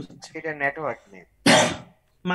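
A person's voice for about a second, then one short, harsh throat clear about one and a half seconds in.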